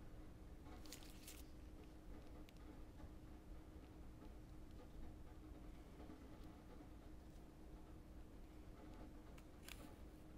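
Near silence: room tone with a faint steady hum, broken by a few faint soft clicks about a second in and again near the end as the cookie and fondant pieces are handled.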